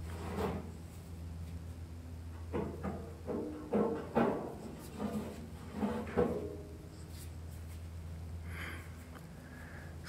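Heavy steel smoker section clanking and knocking as it is handled off a chain hoist onto a steel cart, several short metal knocks with a brief ring, most of them in the middle of the stretch, over a steady low hum.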